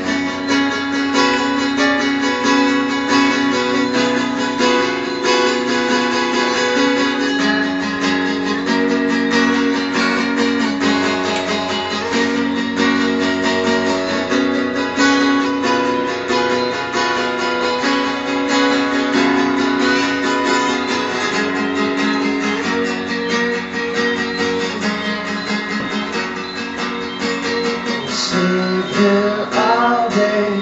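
Acoustic guitar strummed in a steady rhythm through an instrumental passage of a live song, with no singing.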